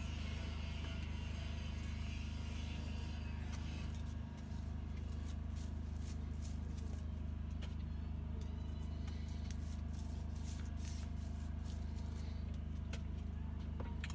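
Steady low droning hum of a running motor or engine, with a brief dip about four seconds in.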